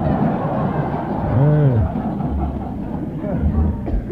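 Studio audience laughing at a radio comedy broadcast, the laughter heavy for about two seconds and then thinning, with a man's laughing voice in the middle. A brief sharp sound comes just before the end. All of it is heard through the narrow, muffled sound of a 1940s broadcast recording.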